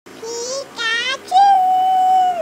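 A high-pitched, cartoonish Pikachu voice crying "Pi-ka-chu" in three syllables, the last one drawn out for about a second before it drops off.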